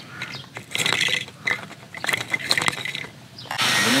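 Irregular plastic clicks and rattling from a homemade PVC reel for electric fence rope being turned and handled, with a short run of faster clicking about a second in. A steady hiss comes in near the end.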